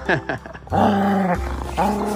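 Norwegian Elkhound giving two drawn-out, steady-pitched growls in tug-of-war play while gripping a rope toy, the first about a second in and the second near the end.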